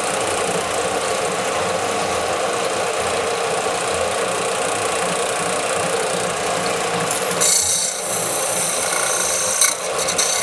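Bench-top combination belt and disc sander running steadily. About seven and a half seconds in, a small nickel arrowhead is pressed to the abrasive and a brighter, hissing grind takes over until near the end.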